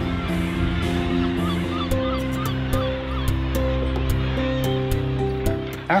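Background music of slow, held notes over the calls of a seabird colony, which come in short, repeated cries from about a second in and grow scratchier in the second half.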